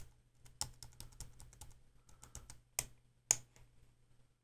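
Computer mouse button clicked quickly over and over, then a few single clicks, as blemishes are dabbed out one by one with a spot-removal brush. A faint steady low hum lies underneath.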